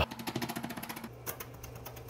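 Kitchen knife rapidly dicing carrot on a plastic cutting board: a fast, even series of light taps.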